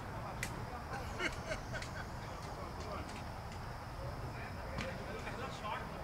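Faint, indistinct voices of players calling across an open cricket field, over a low wind rumble on the microphone, with a few sharp clicks clustered between about one and two seconds in.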